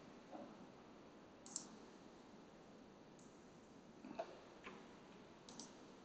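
Near silence with a few faint, short computer-mouse clicks spread through it.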